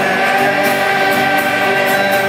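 Live music: a children's choir singing together, with acoustic guitar accompaniment.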